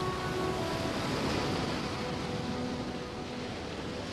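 Ocean surf breaking against rocks, a steady rushing wash that slowly grows quieter.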